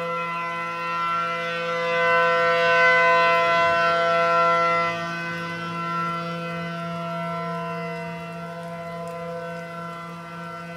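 1979 ACA Allertor 125 electronic outdoor warning siren sounding a steady tornado-warning alert tone. It holds one pitch throughout, swells to its loudest a couple of seconds in, then eases back down.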